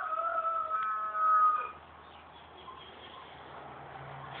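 A single drawn-out animal call about two seconds long, holding a steady pitch, getting louder near its end and then dropping away.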